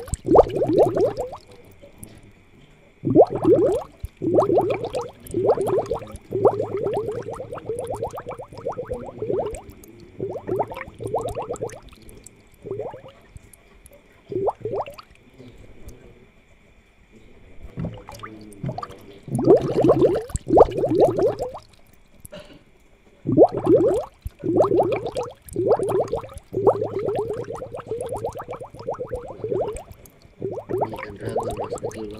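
Aquarium water bubbling and gurgling in bursts of a second or two, with quieter gaps between them.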